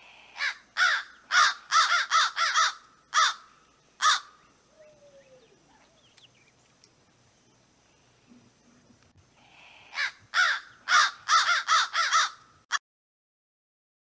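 American crow cawing: a quick series of about nine caws over the first four seconds, a pause of several seconds, then another series of about eight caws that cuts off abruptly near the end.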